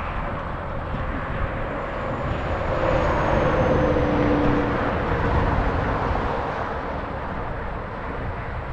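A vehicle passing on the road, its tyre and engine noise swelling about three to five seconds in with a slightly falling tone, over steady wind rumble on the microphone.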